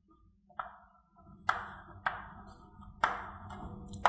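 Chalk writing on a blackboard: a few sharp taps of the chalk hitting the board, each trailing off in a short scratchy stroke.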